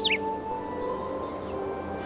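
Soft background music of slow, held notes that shift gently, with a quick run of bird-like chirps right at the start.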